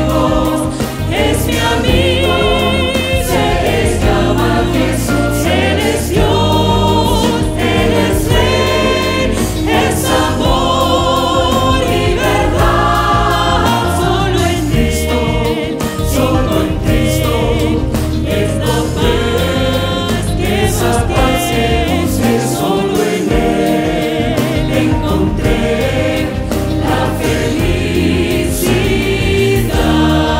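A female lead vocalist and a mixed choir singing a Spanish-language song together with live band accompaniment, continuous and full throughout.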